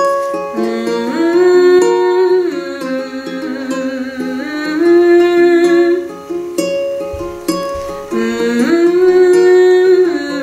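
Ukulele played in a steady pattern under a woman's wordless vocal melody, which glides up and down between long held notes.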